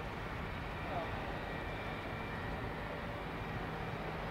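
Kamov Ka-62 helicopter running steadily close to the ground as it turns slowly: a constant turbine whine over the rotor noise.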